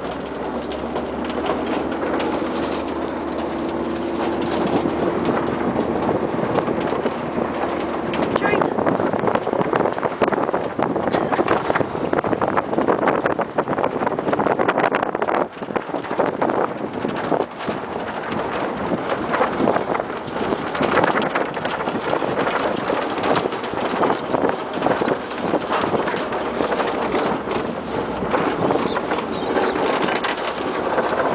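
Towing vehicle running across a rough grass paddock, with a steady hum for about the first eight seconds. After that, continuous rattling and knocking from the jolting ride take over and stay loud.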